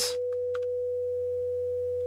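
Bitwig Polymer synth holding one sustained, nearly pure sine-like note at a steady level. It is a single note of a melody generated by a Markov-chain note sequencer.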